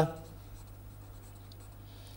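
A pen writing on paper, faint scratching strokes, with a steady low hum underneath.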